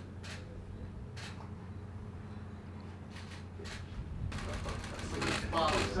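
A low steady hum under faint, scattered voices. Near the end, noise and talking build up.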